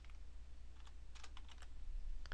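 A handful of faint keystrokes on a computer keyboard, typed in quick succession around the middle.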